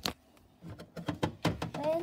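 Clicks and knocks of things being handled and set down inside a fridge: one sharp knock at the start, then a cluster of knocks about a second in, with a child's voice near the end.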